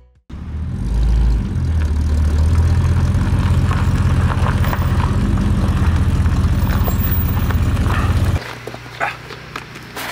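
Engine of a 1955 Chevrolet sedan running steadily with a low, even sound, cutting off abruptly about eight seconds in.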